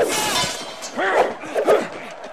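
A sword blow landing with a sharp metallic clang and ring, followed by the fighters' grunts and shouts of effort.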